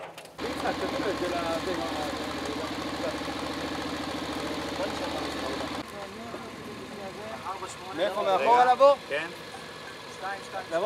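A motor running steadily with a fast, even pulse, which cuts off abruptly almost six seconds in. It is followed by quieter background and a man's voice briefly near the end.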